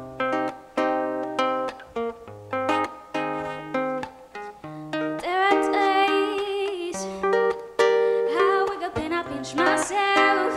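Nylon-string classical guitar playing plucked chords, note by note, for an intro. About halfway through, a woman's voice starts singing over it.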